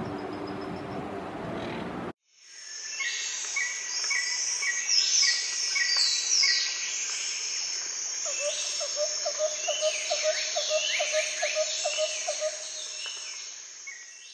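Outdoor noise cuts off suddenly about two seconds in. A bird chorus then fades in: many overlapping high chirps and sweeping whistles over a steady high insect-like hiss. From about eight seconds a low, even series of calls pulses about three times a second for some five seconds.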